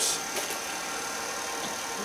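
Steady background hiss with a faint high-pitched whine, and a brief soft click right at the start.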